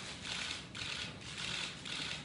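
Camera shutters clicking in quick, uneven bursts, about two or three a second, as several cameras fire at a posed handshake.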